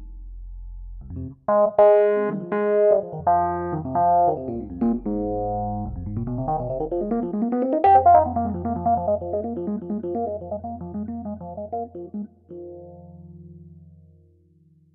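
Nord Stage 3 stage piano playing a sampled Rhodes electric piano sound in an improvised jazz passage: a low bass note, then a series of struck chords, a rising run about six to eight seconds in, and a held low bass note under lighter chords that thin out near the end.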